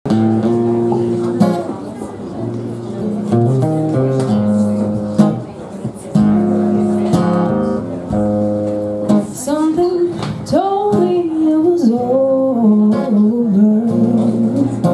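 Acoustic guitar playing an introduction of chords, joined by a woman's solo singing voice about nine seconds in.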